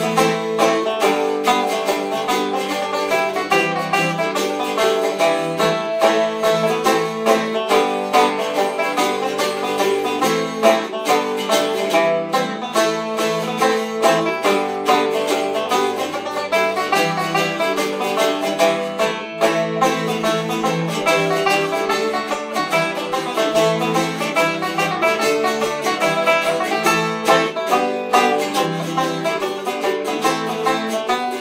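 Banjo and a round-bodied, long-necked plucked string instrument, likely a bouzouki, playing an Irish hornpipe together in a steady, unbroken run of quick picked notes.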